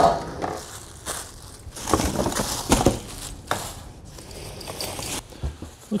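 Packaging being handled: plastic wrap and foam sheeting rustling and crinkling in irregular bursts, loudest about two and three seconds in, with a few soft knocks of parts against the cardboard box.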